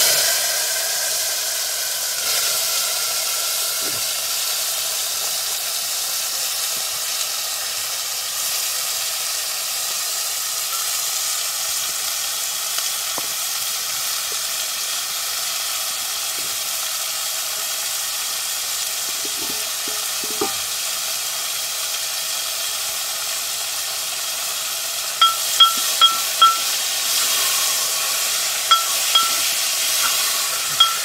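Food sizzling as it fries in a metal pan over a wood fire, steady throughout. Near the end a metal ladle clinks against the pan in quick runs of a few strikes.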